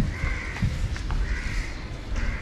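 A crow cawing a few times, each call drawn out over about half a second, over a low rumble and the rub of a microfiber cloth buffing the car's paint.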